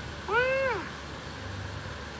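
A single short, high-pitched cry, about half a second long, that rises and then falls in pitch.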